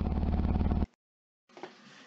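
An engine idling steadily with a fast, even pulse, which cuts off suddenly just under a second in, leaving silence.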